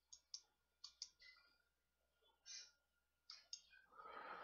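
Faint computer mouse clicks against near silence: about eight short clicks spread over the few seconds, some in quick pairs.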